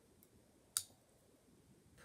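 A single small, sharp click from a silver necklace's clasp being worked onto one of its extender rings, heard once about three-quarters of a second in over faint room tone.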